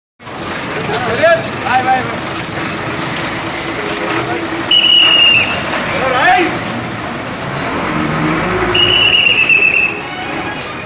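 City buses running and pulling past, with people shouting and cheering over the engine noise. Two long, high, steady tones ring out, one about five seconds in and one near the end.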